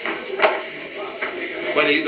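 A man's voice calling out to someone, with two louder calls, one about half a second in and one near the end.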